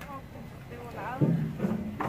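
Faint voices of people talking in the background, without clear words, over a low hum.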